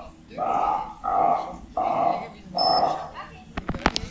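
Harbor seals making five short growling calls, about two-thirds of a second apart. Then comes a brief high trainer's whistle, the bridge signal telling the seal it did the behavior correctly, followed by a few sharp clanks from the metal fish bucket.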